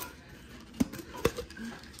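A few sharp plastic clicks as a clear plastic lid is pressed onto and pulled off the rim of a reusable plastic Starbucks cup, with the lid fitting.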